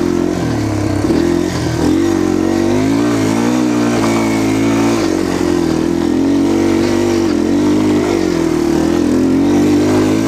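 Yamaha TTR230's single-cylinder four-stroke engine running under load as the bike climbs a rocky trail, the revs rising and falling continually with the throttle.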